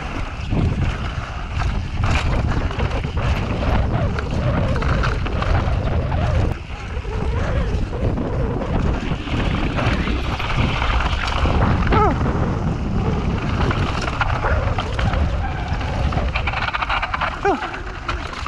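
Mountain bike tyres rolling fast over granite slab, with the bike rattling and knocking over the rough rock and wind buffeting the microphone.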